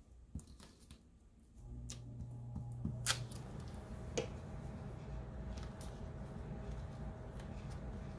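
Glue stick and paper being handled on a collage: soft rubbing and small taps, with two sharp clicks about a second apart near the middle. A steady low hum starts about one and a half seconds in and continues.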